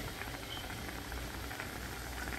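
Heavy cream and melted cheese sauce simmering in a frying pan: a steady soft bubbling and crackle.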